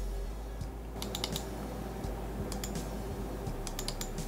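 Light clicks of a computer keyboard in a few short clusters, about a second in, past halfway and again near the end, over a steady low electrical hum.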